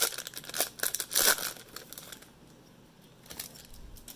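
Foil wrapper of a Topps baseball card pack crinkling as it is torn and pulled open by hand. The crackling is densest in the first two seconds, then drops to faint rustling.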